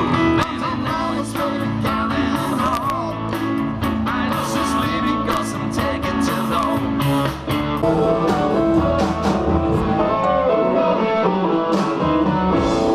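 Live blues/rock'n'roll band playing without vocals: electric guitar over upright double bass and drums, the guitar bending notes a few seconds in.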